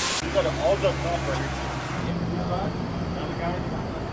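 A motor vehicle engine idling steadily in street traffic. Its low hum shifts to a higher pitch about two seconds in, with a short rushing burst right at the start and faint voices talking in the background.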